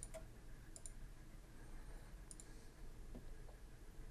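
A few faint computer mouse clicks against quiet room tone.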